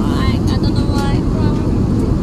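Steady low rumble of an airliner cabin waiting on the ground, with a child's voice making wavering, wailing crying sounds twice.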